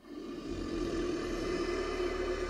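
A sound effect of a dragon's fiery breath: a deep, steady rumbling rush that swells in over the first half second and then holds level.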